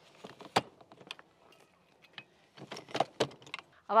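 Light metallic clicks and clinks from the sections of an aluminium telescoping ladder being adjusted: one sharp click about half a second in, a few scattered ones, then a cluster of clinks around three seconds in.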